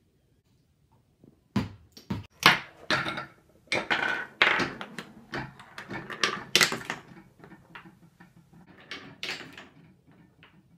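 Wooden blocks, dominoes and balls of a homemade chain-reaction machine clattering: a series of sharp, irregular wooden knocks and clacks that starts about a second and a half in and thins out near the end.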